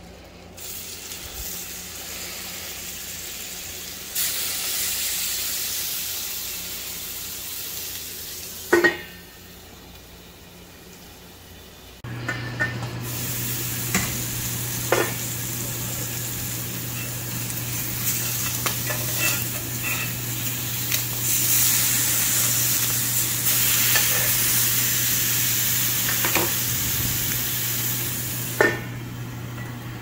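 Butter sizzling in a hot cast iron skillet, then thick pork chops frying in it: the sizzle grows louder and fuller from about twelve seconds in, when a low steady hum also starts. A sharp knock comes shortly before, and a few light clicks follow.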